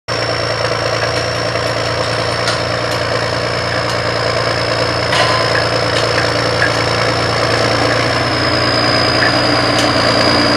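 John Deere 6030's turbocharged six-cylinder diesel engine running steadily under load while pulling a field cultivator, with a steady high whine over the engine note.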